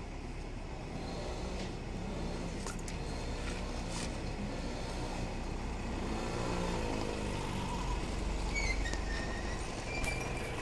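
A steady low engine rumble with a faint pitched hum that rises and falls about six seconds in, and a few small clicks.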